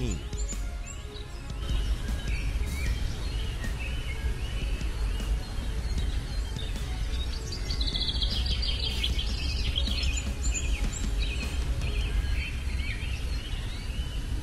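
Birds chirping, with short calls coming thickest about halfway through, over a low steady rumble.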